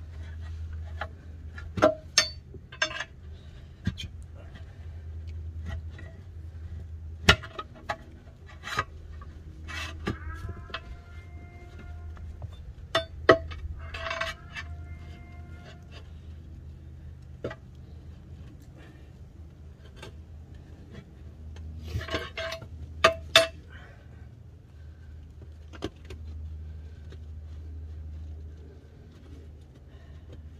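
A steel tire iron clinking and scraping against the steel wheel rim of a Farmall Super A as the stuck tire bead is pried over the rim. Sharp metallic clicks and knocks come at irregular intervals, the loudest a close pair a little past the middle, over a steady low hum.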